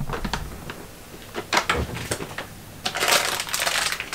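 Rummaging inside a refrigerator: small items knock and clink against the shelves, then a plastic produce bag crinkles for about a second near the end as it is pulled out.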